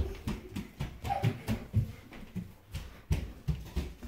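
Footsteps thudding on a hardwood floor, about three or four a second.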